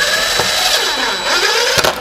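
Cordless drill-driver running, driving a screw through a metal mounting plate into wood; the motor's pitch sags under load and rises again, with a couple of clicks as the screw seats, then it stops.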